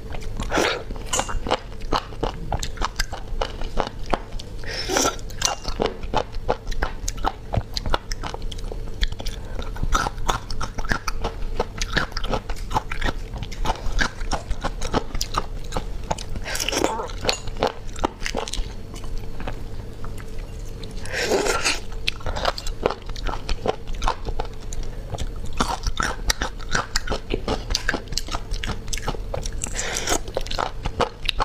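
Close-miked eating of small sea snails: sucking the meat out of the shells and chewing, with many small wet clicks and a few louder sucks spread through.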